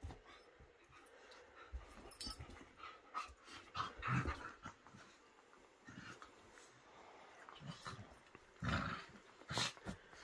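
A whippet and a cockapoo play-fighting, with short, irregular dog sounds and scuffling on the bedding. A couple of louder bursts come near the end.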